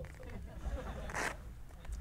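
Wind buffeting the microphone in a low rumble, with a brief hiss about a second in.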